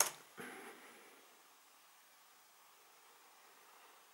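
A single sharp computer keyboard key click right at the start, the Enter key being pressed, followed by a brief faint sound and then low, steady room tone.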